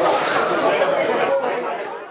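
Chatter of many voices in a large hall, fading out near the end.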